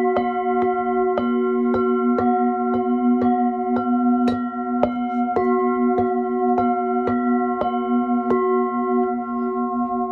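Tibetan singing bowls struck with a padded mallet in a steady rhythm, about two strikes a second, several bowls ringing together at different pitches. The strikes stop near the end, leaving the bowls ringing on.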